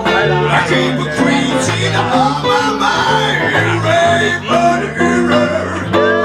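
Blues played on acoustic and electric guitars in an instrumental passage: a lead line of bending notes over a steady stepping bass line.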